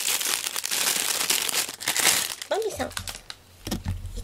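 Clear plastic bag crinkling as a plush toy is pulled out of it, a dense crackle for about two seconds, followed by a short vocal sound and low handling bumps.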